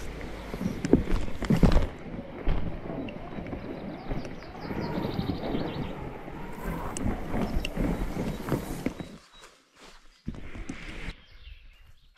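Inflatable paddleboard being dragged over grass with the camera mounted on it: a continuous rustling scrape with bumps and knocks, which drops away to near quiet for about a second near the end.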